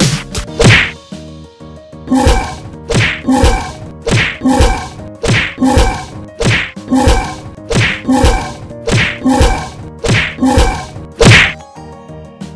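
Cartoon fight sound effects: sharp whacks with a short pitched ring, landing in quick pairs about once a second, for blows in an animated animal fight.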